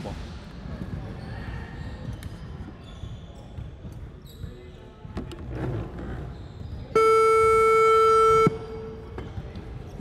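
Gym game buzzer sounding once, a loud steady horn tone lasting about a second and a half that starts about seven seconds in and cuts off sharply. Before it, occasional basketball bounces and distant voices echo in the large hall.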